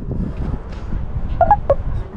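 Wind rumbling on the handheld camera's microphone. A few short, high chirps come about one and a half seconds in.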